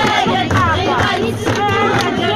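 A group of women singing a Kabyle song together, accompanied by handclaps and a bendir frame drum beating about twice a second.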